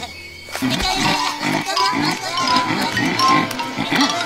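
Cartoon animal characters making wordless vocal sounds: a quick run of short, pitched syllables, several a second, starting about half a second in, over background music.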